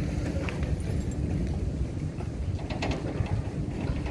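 Wind buffeting the microphone outdoors: a steady, uneven low rumble.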